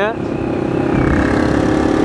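Motorcycle engine running at steady revs while the bike is ridden along the road.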